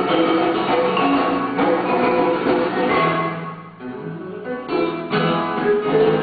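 Acoustic guitar playing a tune of plucked notes, softer for a moment a little after the middle before picking up again.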